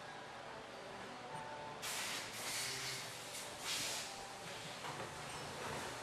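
Haas VF-3 Super Speed CNC vertical mill doing a tool change, heard faintly: a few short hissing bursts of air between about two and four seconds in, over a low machine hum.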